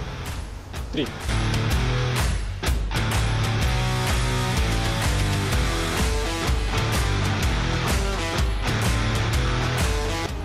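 Background music with a steady beat, swelling up about a second in.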